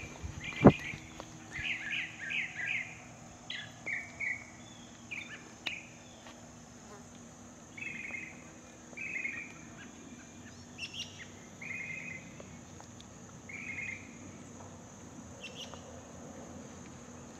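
Small birds calling in the trees, short chirping phrases repeated about once a second, with a steady high-pitched hiss underneath. A sharp knock under a second in.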